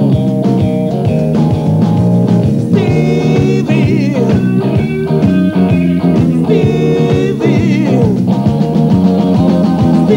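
Blues-rock band playing: electric guitar lines, some notes held with vibrato, over bass and a steady drum beat.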